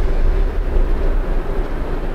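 A loud, deep rumble with a faint steady hum above it, slowly fading.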